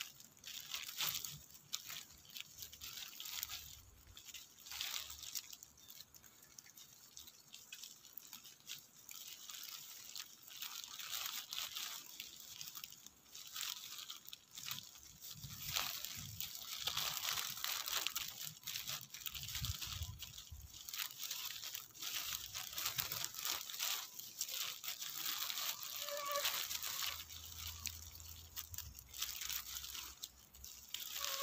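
Irregular rustling and crackling of leafy vines being handled at close range, with scattered small clicks and crinkles.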